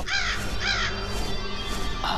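Crow cawing twice in quick succession, two short harsh calls in the first second, over a low steady music bed.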